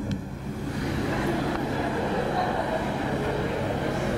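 Indistinct, off-microphone voices blurred by the hall's echo, over a steady low hum.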